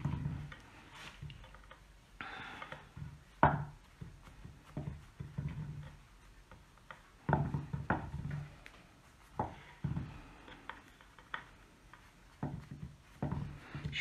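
Hands smoothing and pressing a sheet of marshmallow fondant down over a cake on a glass plate: soft rubbing and handling noises with scattered light knocks, the sharpest about three and a half seconds in.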